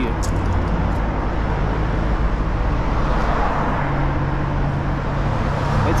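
Street traffic beside the curb: a car passing, its noise swelling about three seconds in, then a steady low engine hum near the end over a constant low rumble.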